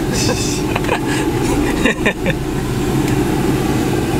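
Engine and road noise of a van heard from inside the cabin while driving: a steady low rumble, with brief snatches of voice over it.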